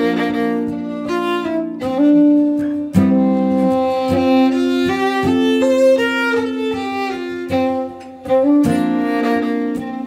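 Fiddle playing the melody of a Swedish folk waltz, with acoustic guitar accompaniment, in long bowed notes over regular strummed chords.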